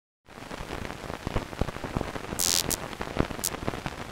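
Crackling static noise sound effect: a steady hiss full of scattered clicks and pops, starting about a quarter second in, with a few short bursts of sharper high hiss around the middle.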